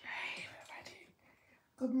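A woman whispering briefly, then a pause before she starts speaking aloud near the end.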